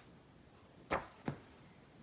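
Two short taps, under half a second apart, as a comic book in a plastic bag is handled and set against a display stand.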